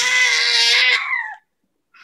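A baby's long, loud, high-pitched happy squeal, held steady and then dropping in pitch as it trails off about a second and a half in.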